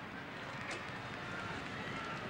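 Steady racecourse broadcast ambience, a noisy background with faint distant voices in it and a single faint knock about two thirds of a second in.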